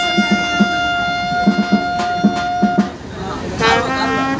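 Trumpet holding one long note for about three seconds, then starting a new phrase of shorter notes near the end, over a low, regular beat.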